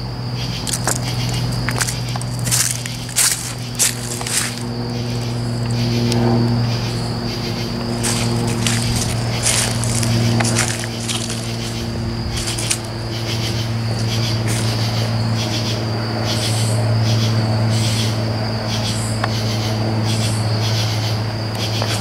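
A loud chorus of night-singing insects: a steady high trill with short, raspy calls repeating over it. Under it runs a steady low hum.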